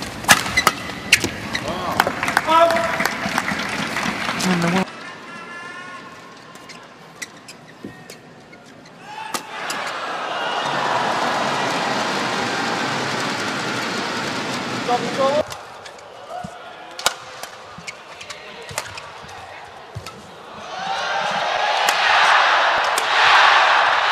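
Badminton rally sounds: sharp racket hits on the shuttlecock, most rapid in the first few seconds, and an arena crowd cheering in two swells, once in the middle and again building near the end.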